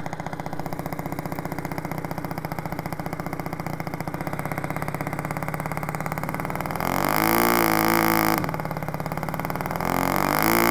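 RC scale Gipsy Moth biplane's model engine idling with an even, pulsing beat on the ground. About seven seconds in it is revved up sharply for a second or two, cut back to idle, and revved again at the end: a throttle run-up before takeoff.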